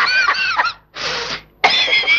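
A man's high, wavering vocal sounds without words, then a short breathy hiss about a second in, and the voice starting again near the end.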